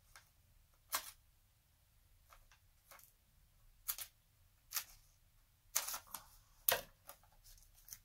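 Scattered short clicks and light taps, about eight in all, from craft supplies (a sheet of adhesive dimensionals and paper pieces) being handled on a tabletop. The loudest come a little past the middle.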